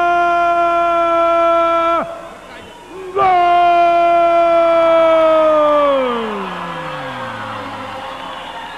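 A ring announcer drawing out the wrestler's name "Octagon" in a long sung-out call. The call comes as one held note for about two seconds, a short break, then a second long held note that slides down in pitch near the end, with a crowd underneath.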